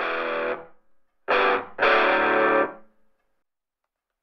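Soundtrack music of distorted electric guitar: three held chords, the last about a second long, then the music drops out.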